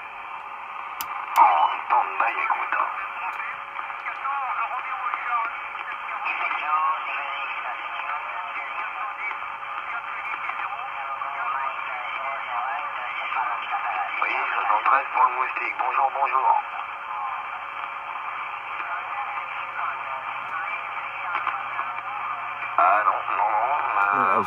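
Marko CB-747 CB radio's speaker hissing with band-limited static, with a steady whistle under it and faint, unclear voices of other stations coming and going.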